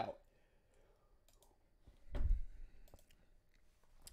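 Faint computer mouse clicks, then one louder thump with a short low rumble about two seconds in, as the screen is switched to a slide presentation.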